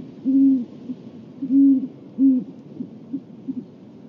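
Great horned owl hooting: a run of low hoots, three long loud ones in the first two and a half seconds, then a few short, fainter notes.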